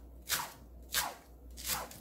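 Kitchen knife slicing through a Korean large green onion (daepa) on a wooden cutting board: three cuts, about two-thirds of a second apart.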